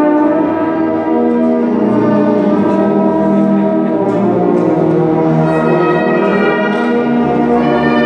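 Brass band, with a sousaphone on the bass line, playing slow, sustained chords that change every second or two.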